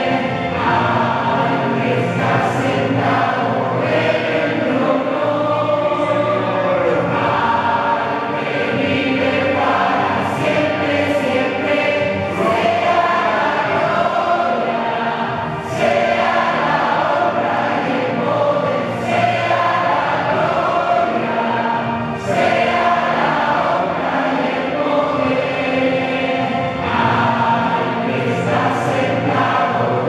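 A large congregation singing a hymn together, many voices at once, holding a steady level with no break.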